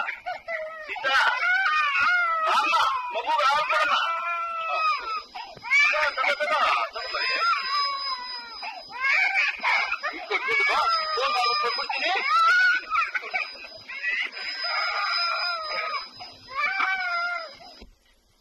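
A young child crying and screaming in long, repeated high-pitched wails, with a faint steady high whine underneath from about five seconds in.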